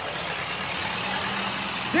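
Stripped-down Model T Ford race car's four-cylinder engine running steadily, over an even background hiss.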